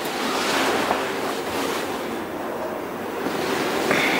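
A steady rushing noise, dipping a little midway and swelling again near the end.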